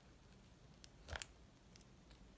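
A fingernail picking at the seam of a cardboard AirPods box. It makes a small click a little under a second in, then a short, louder burst of clicks and scraping just after the middle.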